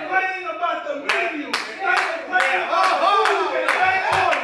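Hand clapping in a steady rhythm, about three claps a second, starting about a second in, over a voice with a pitched, rising-and-falling delivery.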